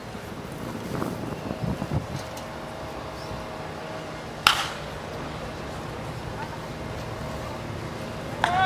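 One sharp crack of a wooden bat hitting a pitched baseball, about four and a half seconds in, with a short ring after it, over a steady outdoor background and faint voices.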